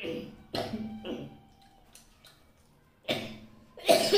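A man coughing in short, loud bursts, a few in the first second and more near the end, with throat-clearing sounds.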